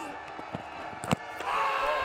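A cricket ball knocks once into the batter's pad, a little over a second in, off a late in-swinging delivery. Straight after it, crowd noise and shouts of appeal from the fielders build up.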